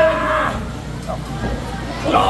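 A man's long, drawn-out yell during a wrestling grapple, lasting about the first half second, then a quieter stretch of hall noise.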